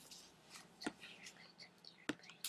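A single faint click about a second in, from the computer's pointer button or trackpad, as a pen-tool anchor point is set while tracing a path. Low hissy breath sounds sit around it.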